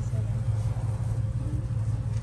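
Steady low hum running without change, with faint voices in the background.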